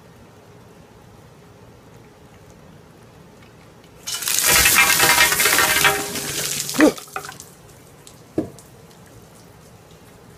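A bucket of ice water is dumped over a seated man, splashing onto him and the table. It starts suddenly about four seconds in and runs for nearly three seconds, followed by a couple of short sharp sounds.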